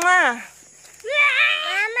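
Voices calling out a drawn-out goodbye: a long held call that falls away, then after a short pause a higher, wavering drawn-out call.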